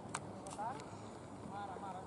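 Distant shouts from people on a football pitch, two short calls, with a sharp knock just after the start.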